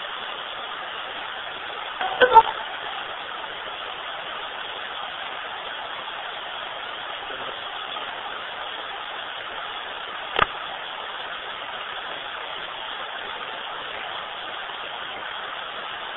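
Hacked Radio Shack 12-587 radio used as a ghost box, sweeping the FM band: a steady static hiss. A brief voice-like snatch comes through about two seconds in, and there is a single sharp click about ten seconds in.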